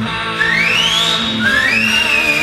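Rock music: a lead line slides up in pitch twice, over sustained chords.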